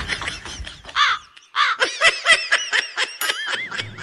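High-pitched cartoon-character laughter: a run of rapid giggles, with a short break about a second and a half in before it picks up again.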